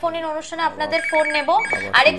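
Telephone ringing over the studio phone line: two short bursts of a fast-pulsing two-note ring about a second in, heard under ongoing speech.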